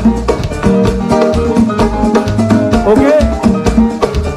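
A live band playing dance music over a pulsing bass line and a steady percussive beat. The singer calls "Ok" into the microphone near the end.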